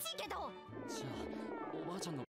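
Japanese anime dialogue with background music, played back quietly; in the second half a character's voice is drawn out, with sliding pitch.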